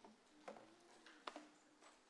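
Near silence: room tone with two faint clicks, about half a second and just over a second in.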